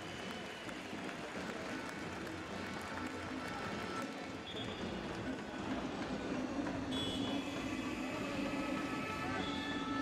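Basketball arena ambience: music playing in the arena over a steady crowd murmur, growing a little louder over the second half.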